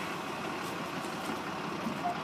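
Steady engine noise with an even hiss, running at a constant level.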